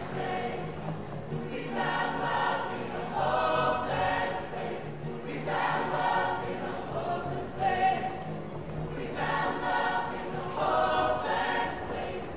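Show choir of mixed voices singing together in full chorus, in short repeated phrases.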